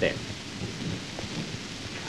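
Steady hiss with faint crackle, the surface noise of an early sound-film recording, with the tail of a man's word at the very start.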